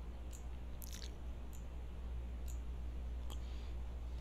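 Computer mouse clicking about five times, roughly one click every second or less, the sharpest about a second in, over a steady low hum.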